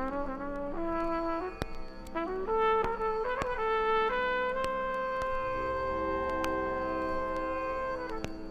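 Trumpet playing a short phrase of quick notes stepping upward, then holding one long steady note for about three and a half seconds that stops near the end, over a sustained drone.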